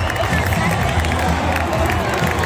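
Ballpark crowd noise: many voices talking and cheering at once, with music playing over the stadium's speakers underneath.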